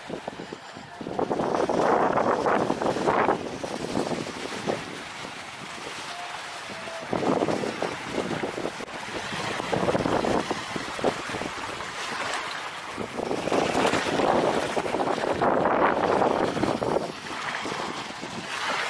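Small waves washing up onto a sandy beach, coming in several long surges that swell and fall back, with wind on the microphone.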